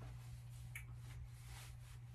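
Quiet room tone with a steady low hum and a few faint soft clicks or rustles, the clearest about three-quarters of a second in.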